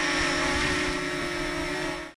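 DJI Mini 2 quadcopter hovering close by, its four propellers giving a steady whine of several held tones over a rushing hiss, easing slightly near the end.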